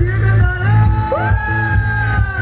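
Live party band playing an upbeat dance medley over a steady bass beat, with a long held note coming in about a second in.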